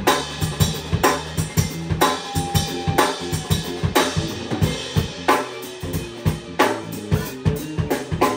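A small band jamming live: drum kit keeping a steady beat, its loudest hits about once a second, under electric guitar.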